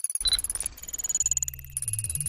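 Electronic sci-fi sound effects for an animated loading bar: a fast stream of ticking electronic pulses under high steady tones, with a short ding about a quarter second in and a low electronic hum that comes in about halfway.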